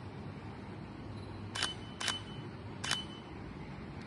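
Three camera shutter clicks while people pose for a photo, the first two about half a second apart and the third almost a second later.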